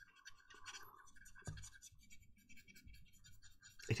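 Faint, irregular scratching of a large paintbrush's bristles worked over the surface of a model tank hull, brushing paint on in short strokes. The strokes thin out after about two seconds, with one small click in between.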